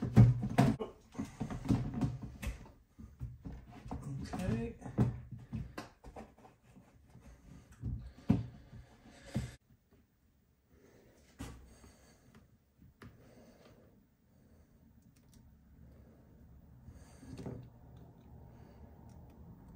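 PVC pipe and fittings knocking and rattling against a clear plastic storage tub as the irrigation frame is worked into place, a quick run of clicks and knocks for the first several seconds. After that, only a few faint clicks of small parts being handled.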